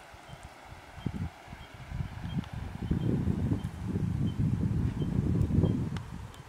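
Gusty wind buffeting the microphone outdoors: an irregular low rumble that grows stronger about two seconds in. A faint high chirp repeats about every half second behind it.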